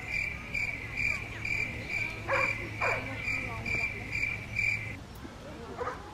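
Cricket chirping in a steady rhythm, about two chirps a second, stopping about five seconds in. Two brief sliding calls come about halfway through.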